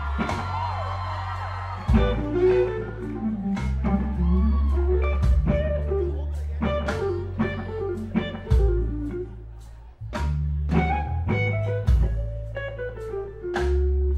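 Live blues-rock trio playing an instrumental passage between vocal lines: electric guitar phrases over sustained electric bass notes and drum hits. The band drops out briefly about ten seconds in, then comes back in together.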